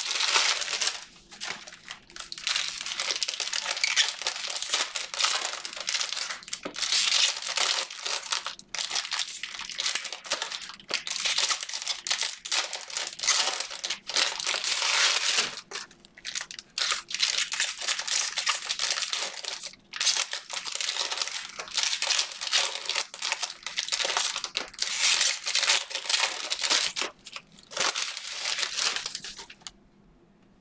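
Foil wrappers of Panini Prizm hobby card packs crinkling and tearing as the packs are ripped open and the wrappers crumpled, nearly continuous with a few short breaks, along with the cards being handled.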